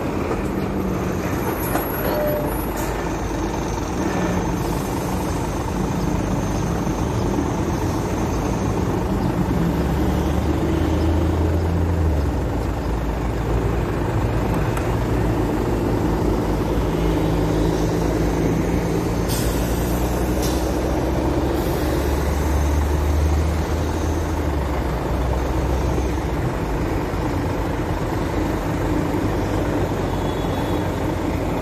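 Heavy road traffic at a busy junction: diesel engines of trucks and buses running close by, with a low engine drone that swells twice as large vehicles pull up alongside and move off. A brief hiss comes about two-thirds of the way through.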